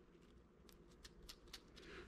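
Faint crackling of the crisp skin of a smoked chicken wing as it is handled and pulled apart by hand: a few light crackles through the middle and later part, the sign of well-crisped skin.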